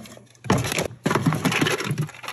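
Cardboard puzzle boxes and small metal tins being shifted against each other inside a plastic storage tote: a sharp knock about half a second in, then a rummaging clatter and scrape.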